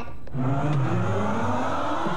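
A pitched swell of several tones that starts about a third of a second in and rises steadily in pitch over a steady low tone.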